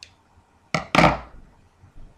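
Scissors set down on a kitchen countertop: two knocks about a quarter of a second apart, the second louder, after a brief snip of the scissors at the start.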